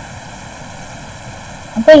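Steady background hiss of the recording with no other events; a voice begins near the end.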